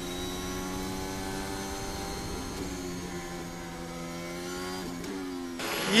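Alpine A521's Renault 1.6-litre V6 turbo-hybrid Formula 1 engine running at steady revs, heard through the team radio. Its pitch sags slightly in the middle and rises briefly near the end, as a radio transmission opens.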